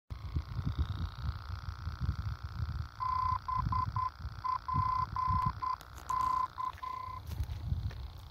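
Morse-code identifier of the Brookmans Park VOR aviation beacon received on a Malachite SDR radio: a steady 1 kHz tone keyed in dots and dashes spelling B-P-K, starting about three seconds in and ending about a second before the end. It sits over a faint steady hum and an uneven low rumble.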